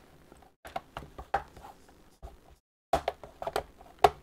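Plastic drive-bay cover on a laptop's underside being pressed and clipped into place: a series of light, scattered clicks and taps, with two brief dropouts to silence.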